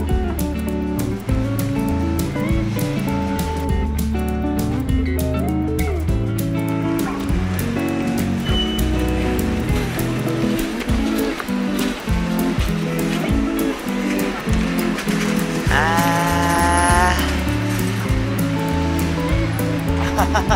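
Background music with a steady bass line and held chords. About three-quarters of the way through, a short rising tone sounds over it.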